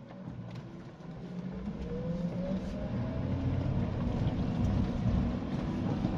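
Suzuki Jimny's 1.5-litre four-cylinder petrol engine heard from inside the cabin on a rough dirt track, getting louder from about a second in as it pulls harder, its engine note rising.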